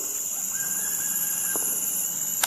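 Forest insects droning steadily at two high pitches. A faint held tone lasts about a second near the middle.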